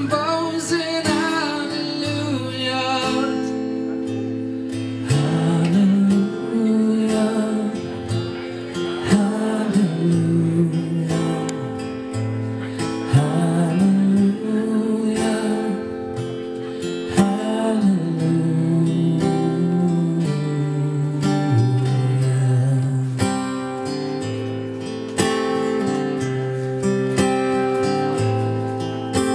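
A man singing a slow melody with long, held and gliding notes over a strummed acoustic guitar, performed live.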